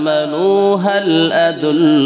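A man's voice chanting in a drawn-out melodic style through a microphone, in the manner of Quranic recitation, with long held notes that slide between pitches.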